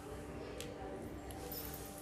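Quiet background with a steady low hum and a faint click about half a second in.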